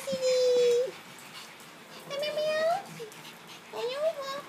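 Small dog whining in three drawn-out high cries, the second and third rising in pitch, as it greets someone arriving home in excitement.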